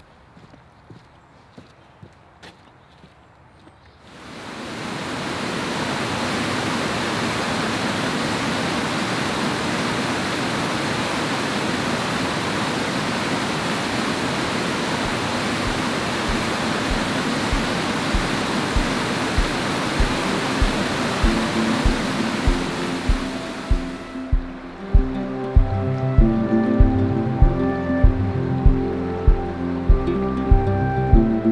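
Footsteps on a wooden boardwalk, then from about four seconds in the steady rush of a large river waterfall in full flow after heavy rain. A steady music beat comes in under the water, and near the end background music takes over.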